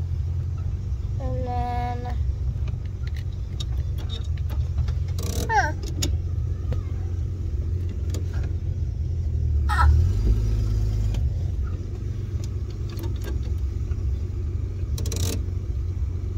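A 1933 Dodge DP's flathead straight-six engine running as the car is driven, heard from inside the car as a steady low drone that swells briefly about ten seconds in. A few brief voice sounds rise over it.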